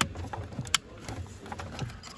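Small clicks and handling noise of plastic parts as electrical block connectors are fitted to a car's steering column switch module. One sharp click comes about three quarters of a second in.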